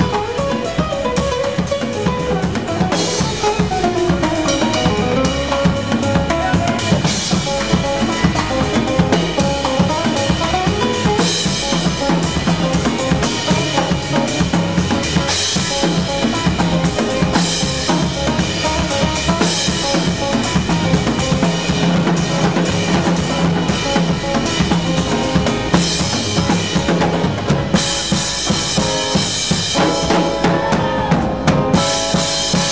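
Drum kit played in a steady groove: a continuous run of bass drum and snare strokes, with bright cymbal washes coming in every few seconds.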